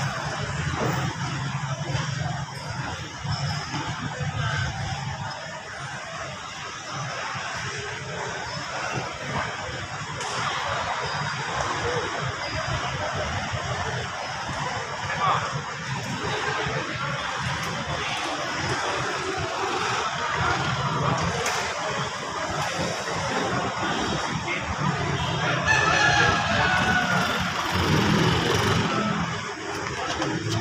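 Motor scooter engines running at low speed and rising and falling as the scooters are ridden slowly, mixed with people talking in the background.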